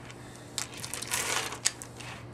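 A strand of pearl beads clicking and rattling against each other and the wooden tabletop as a necklace is handled and laid down: a run of small clicks about half a second in, ending in one sharp click.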